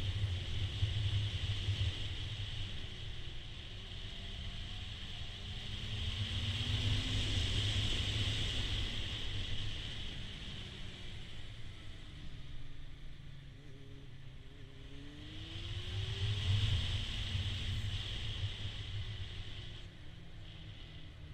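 Honda CBF600 motorcycle's inline-four engine running under way, with steady wind rush over the helmet-mounted camera. The engine note rises twice, about seven and about fifteen seconds in, as the bike accelerates, and the sound swells with it.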